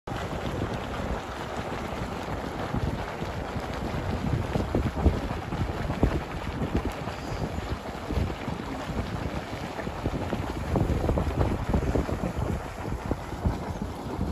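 Continuous rushing and spraying of a hot-spring geyser erupting, with wind buffeting the microphone in irregular gusts.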